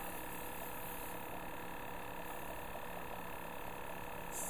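Luminess Air airbrush makeup system running steadily: the small compressor's constant hum with a soft hiss of air from the airbrush as it sprays foundation.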